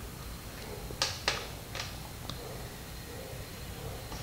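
Small sharp clicks of a button being pressed to start playback on a portable mini DVD player: two close together about a second in, then a lighter one and a faint tick, over a faint steady electronic whine.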